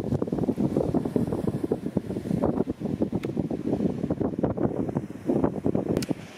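Strong wind buffeting a camera microphone that has no wind muff: a gusting, rumbling noise that rises and falls.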